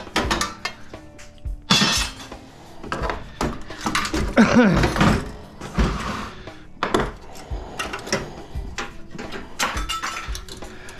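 Sheet-metal parts of a microwave oven's casing clattering and clanking as it is pulled apart by hand and with side cutters: a run of sharp metal knocks and rattles. A short laugh comes about five seconds in.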